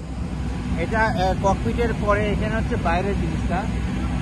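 A man speaking over a steady low rumble of running engine machinery on the apron.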